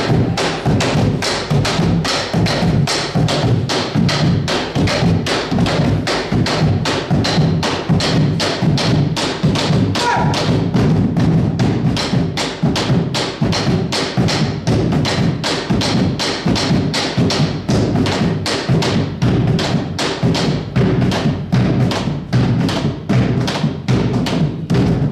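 Two Argentine bombo drums beaten with sticks in a fast, even rhythm, about three strikes a second.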